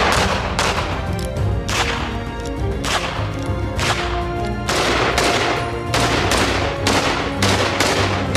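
Gunshots from a handgun and then a wooden-stocked rifle, sharp cracks at about one a second, over background music.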